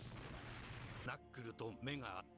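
Faint noisy rumble from the anime's blast sound effects, with no pitch in it. About a second in, a male narrator's voice begins.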